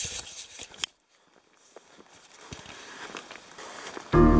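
Handling noise from a handheld camera: fingers rubbing and knocking on it as it is moved, cut off abruptly just before a second in. Faint outdoor background with a few soft clicks follows and slowly grows louder.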